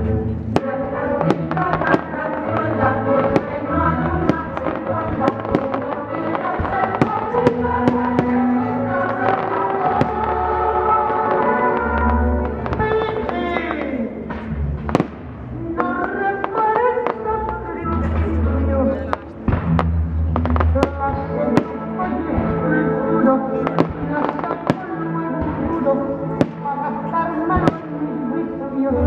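Aerial firework shells bursting over and over, with many sharp bangs scattered through loud music played as part of a pyromusical show.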